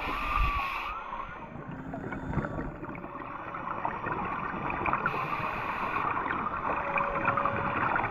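Underwater reef ambience with a steady crackle, over which faint humpback whale calls sound as a few short held tones. A diver's scuba regulator hisses twice, at the start and about five seconds in, each for about a second.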